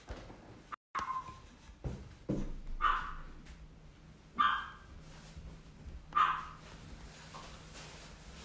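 A dog barking: about five short, separate barks spaced a second or more apart, over a faint steady hum.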